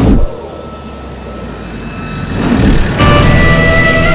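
Film soundtrack: a sudden loud hit, then a low rumble that swells back up with a brief whoosh, and background music comes in about three seconds in.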